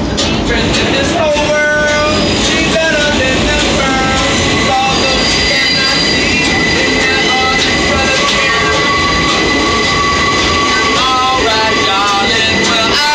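New York subway car running along the track, a loud steady rumble of wheels and car body, with a sustained high-pitched squeal setting in about four seconds in and holding.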